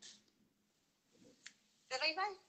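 Near silence with one short, sharp click about one and a half seconds in, then a woman's voice starts near the end.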